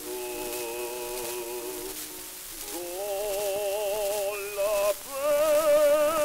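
Baritone voice singing an opera aria with a wide vibrato, on a c.1905 acoustic gramophone disc recording, under a steady surface hiss and crackle. The singing breaks briefly about two and a half seconds in and grows louder about five seconds in.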